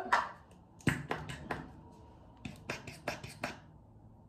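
Pump-top bottle of hair styling foam being shaken by hand: quick clicking knocks in two runs of about five a second, one in the first second and a half and another near the end.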